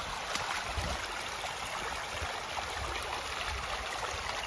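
Water rushing steadily down a narrow concrete drainage channel running full and fast.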